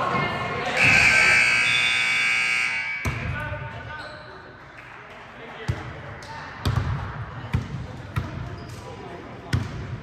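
Gym scoreboard buzzer sounding for about two seconds and cutting off sharply, followed by a basketball bouncing on the hardwood floor several times at an uneven pace.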